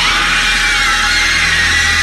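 A pod person's alien shriek from a film soundtrack: a loud, harsh, sustained scream that rises in pitch at the start and then wavers at a high pitch.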